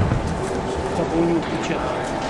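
Indistinct voices and chatter in a large hall, with a brief low tone a little over a second in.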